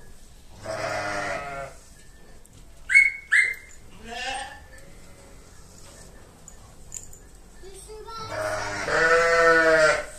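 Sheep bleating: a long wavering bleat about a second in, a fainter short one around four seconds, and a loud long bleat in the last two seconds. Two short high squeaks about three seconds in.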